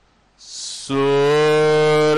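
A short breathy rush, then about a second in a loud, long, steady held note begins and is sustained without a break in pitch.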